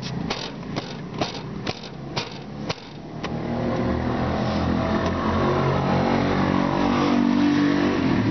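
Sharp flicks and slaps of a cloth against a stone grave niche for about three seconds. Then a motor vehicle's engine comes in and runs on, growing slightly louder.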